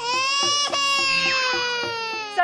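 A person's single long, high-pitched wailing cry, held for about two seconds and sliding slowly down in pitch, as an exaggerated exclamation in a comic stage exchange.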